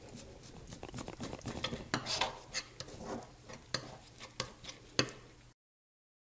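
Metal palette knife scraping and tapping against the palette as it mixes blue and white oil paint with cold wax medium: a run of irregular scrapes and light clicks. It cuts off suddenly about five and a half seconds in.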